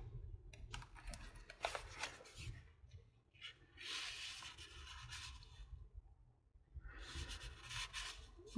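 Faint rustling and rubbing of paper scraps being handled: light clicks and crinkles as cut magazine pieces are sorted in a box, then a longer rustle about four seconds in as a piece of lined paper is laid on the page, with a short near-silent pause after it.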